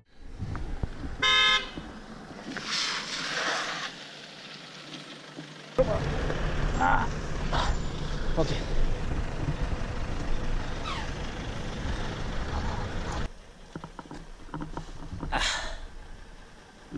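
Roadside traffic sounds with a short vehicle-horn toot about a second in. From about six to thirteen seconds a steady low vehicle rumble sits under scattered street noises.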